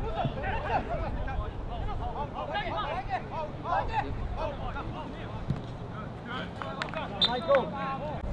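Players' voices calling and shouting across a football pitch, with a few sharp knocks near the end.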